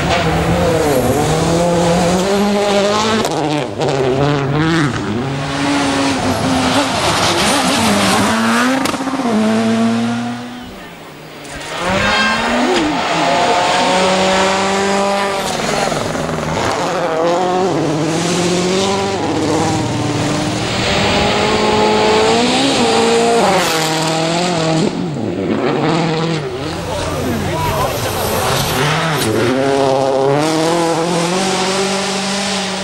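World Rally cars, a Citroën C4 WRC among them, driven flat out on gravel. Their engines rev hard, the pitch climbing and dropping with each gear change as the cars pass. The sound dips briefly about eleven seconds in, then picks up again.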